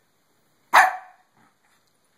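A Shih Tzu gives a single sharp bark about three-quarters of a second in.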